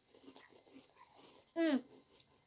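Faint crunching of snack crackers being chewed, then a short vocal sound with a falling pitch near the end.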